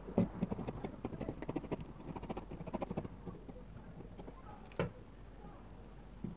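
Scissors cutting through fabric: a quick run of snips with the blades clicking for about three seconds, then a single click a little later.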